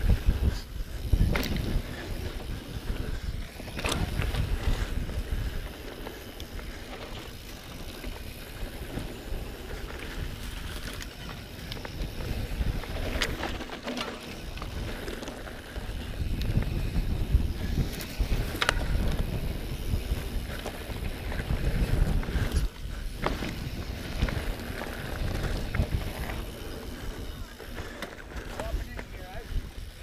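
Specialized Enduro 29 mountain bike rolling down a dirt singletrack: tyre noise on dirt with the bike rattling and knocking sharply over bumps a handful of times. Wind buffets the handlebar camera's microphone.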